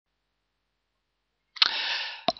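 Dead silence for about a second and a half, then a sudden short hiss of noise, opening with a click and fading away near the end.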